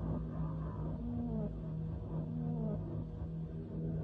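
A low steady drone with wavering tones above it that rise and then slide down in pitch, a new one every second or so.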